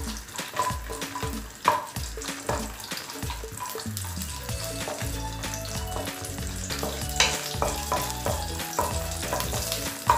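Cashew nuts sizzling as they fry in a nonstick wok, stirred with a spatula that scrapes and taps against the pan throughout.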